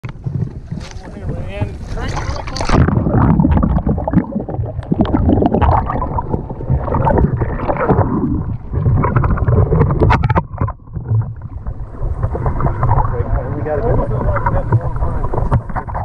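Wind rumbling on the microphone aboard a boat on open water, with indistinct voices over it.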